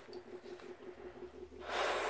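Faint, rapid, even bubbling, about six pulses a second, of chlorine gas passing through solution in the glassware. It is followed near the end by a short, louder breath.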